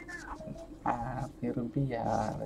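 Indistinct low-pitched voice speaking in short syllables from about a second in, after a brief faint high whine at the start.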